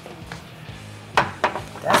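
Soft background music with a steady low tone, broken a little past the middle by two short sharp knocks.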